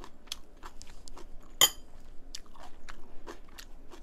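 Someone chewing food close to the microphone, a string of small sharp crunches and clicks. About one and a half seconds in comes a louder, ringing clink, like a metal spoon set down in a ceramic rice bowl.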